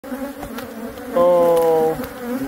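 Honeybees buzzing in a steady drone around a hive opened up in a roof. About a second in, a much louder, steady, slightly falling hum comes in: a bee flying close to the microphone.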